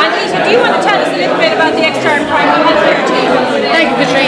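Many voices talking over one another in a large room: crowd chatter.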